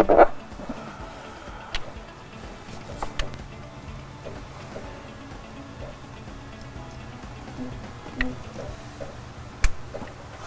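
A few scattered light clicks and taps of hands working wiring and plastic wire loom in a diesel truck's engine bay, over quiet background music.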